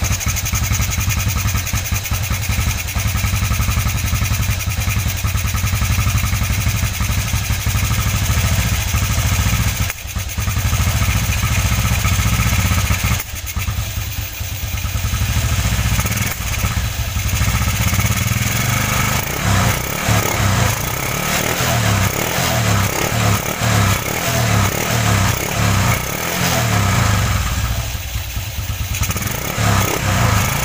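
A Motorstar X110's 110cc single-cylinder four-stroke engine runs just after starting, freshly tuned up with its valve clearances reset. Its note dips briefly twice near the middle, and through the second half it pulses about twice a second.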